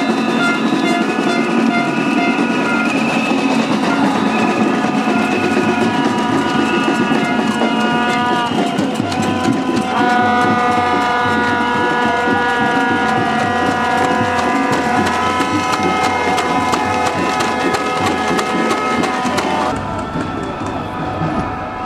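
Several long, steady horn tones sounding together over the noise of a marching crowd, with scattered clatter. The tones change pitch about 4 s and 10 s in.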